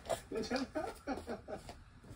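A person's voice in a run of short speech-like syllables that form no clear words.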